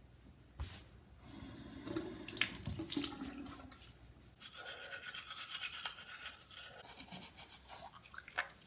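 A click about half a second in, then bathroom sink tap water running into the basin, loudest around the second and third seconds, with its sound changing at about the halfway point and fading near the end.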